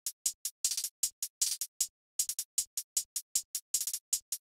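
Two layered hi-hat samples played on their own in a trap beat: a quick run of short, bright ticks, several a second, with tighter clusters and a brief break about two seconds in.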